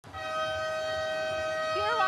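Arena horn sounding one long, steady blast made of several held tones, during a timeout in a basketball game.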